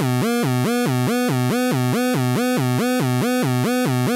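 Moog Werkstatt-01 analog synthesizer oscillator, sequenced by an Arduino, switching rapidly back and forth between a low root note and the octave above, about three times a second, with a short slide into each note. The tone is bright and buzzy. It is the calibration pattern, with the oscillator's exponential-input trim being adjusted to make the upper note a true octave.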